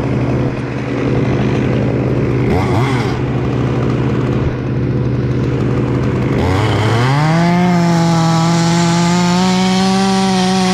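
An engine runs steadily, then about six and a half seconds in a Stihl two-stroke top-handle chainsaw revs up sharply to full throttle and holds a high, steady pitch as it cuts through a walnut stem.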